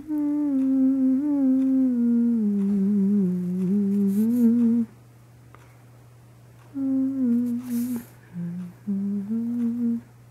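A person humming a slow, wordless tune in two phrases: a long one that dips and rises again, then, after a pause of about two seconds, a shorter one near the end. A steady low hum runs underneath throughout.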